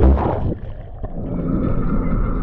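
A GoPro dunked in the surf: a loud splash and rush at the start as the camera goes under, then briefly the dull, muffled churn of water heard underwater, rising back to open surf noise as it surfaces.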